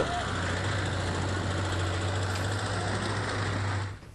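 Tractor engine running steadily, a constant low hum under a broad hiss of outdoor noise.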